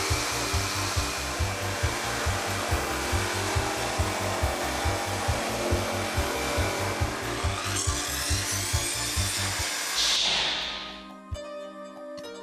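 Corded jigsaw cutting through a wooden board along a guide rail: a steady sawing noise over background music with a regular beat. The sawing stops about ten seconds in, leaving the music.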